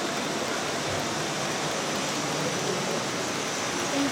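Steady, even background noise of a busy exhibition hall, a broad hubbub with no single clear source standing out.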